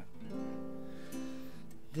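Acoustic guitar strummed softly, opening chords of a song: a chord struck about a third of a second in and another about a second in, each left ringing.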